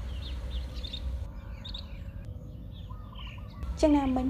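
Birds chirping softly in the background, short high chirps over a steady low hum. A woman's reading voice comes back in near the end.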